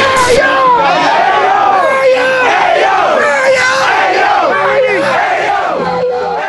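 Many voices shouting and cheering together at once as a team celebrates, starting to fade out near the end.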